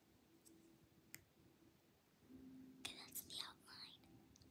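A girl's faint whispering, starting a little past halfway, after a near-silent stretch broken by a soft click about a second in.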